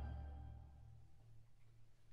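The last low note of a chamber ensemble's closing chord dying away, fading into near silence a little past halfway.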